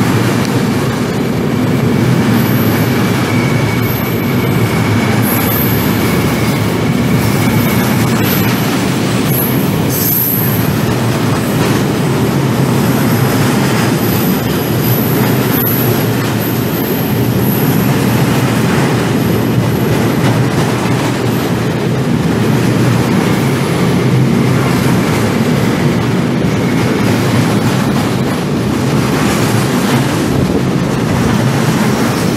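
Freight train of flat wagons loaded with steel bars rolling past at close range: a loud, steady rumble of steel wheels on rail, with high-pitched wheel squeal that comes and goes.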